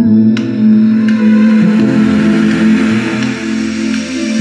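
Recorded music playing through a Yamaha AX-570 stereo amplifier and loudspeakers: an instrumental passage of a Vietnamese song, held chords with no singing.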